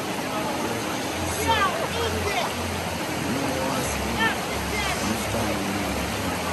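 River water rushing steadily past rocks, with people laughing and calling out over it.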